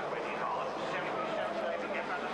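Engines of small stock cars racing round a short oval track, a steady drone.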